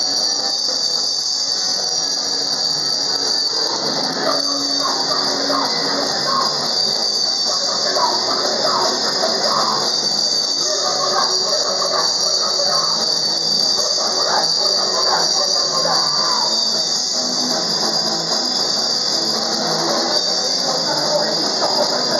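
Hardcore punk band playing live: loud, distorted guitars and drums, with a steady harsh high hiss over the whole recording.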